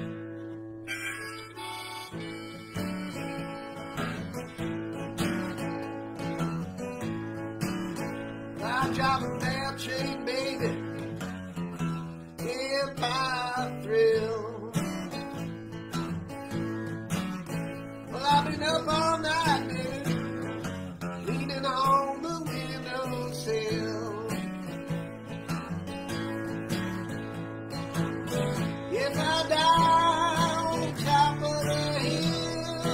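Acoustic guitar strummed steadily while a harmonica in a neck rack plays a wavering, bending melody over the chords: an instrumental harmonica-and-guitar passage.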